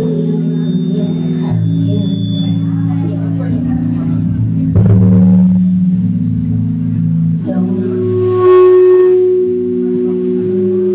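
Live pop band playing, with sustained keyboard chords, bass, drums and electric guitar under a woman's singing voice. A loud drum or cymbal hit lands about halfway through.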